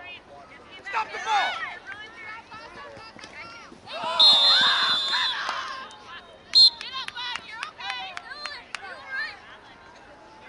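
Scattered distant shouts and chatter of players and spectators at a soccer field. A long, loud whistle blast about four seconds in and a short blast a couple of seconds later, typical of a referee's whistle.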